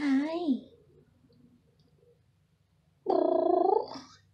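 A woman's cooing voice: a short sound at the start and a long, steady, drawn-out one about three seconds in, with faint cat purring in the quiet stretch between.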